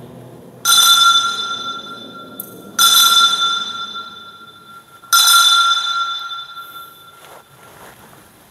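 Altar bell struck three times about two seconds apart during the elevation of the chalice, each ring clear and high and dying away before the next.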